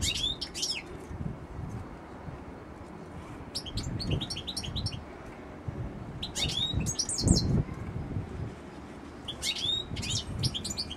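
European goldfinch singing in short bursts of quick, twittering chirps, four phrases a few seconds apart, with dull low thumps underneath, the loudest a little after the middle.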